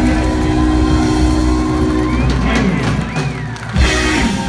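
Live rock and roll band with electric guitars ending a song: a chord rings out for about two seconds, then fades as the crowd whoops and cheers, and a final loud crash lands near the end.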